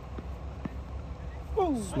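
Steady low outdoor rumble with a couple of faint knocks, then a man's voice sliding down in pitch near the end as he starts to call the delivery.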